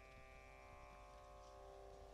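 Near silence, with a faint steady drone of several held tones.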